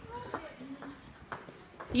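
A few soft, spaced clicks of footsteps on a hard shop floor, under faint murmured speech. A woman starts talking right at the end.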